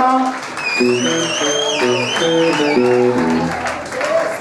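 Live band music: electric guitar and bass playing short notes that step up and down, with a high wavering line sounding over them in the middle.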